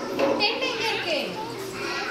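Young children's voices talking in a classroom.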